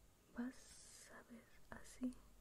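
A woman's faint whispering in two short stretches, the first about half a second in and the second near the end.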